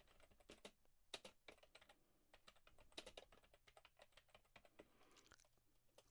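Faint keystrokes on a computer keyboard: a run of irregular clicks as a phrase is typed.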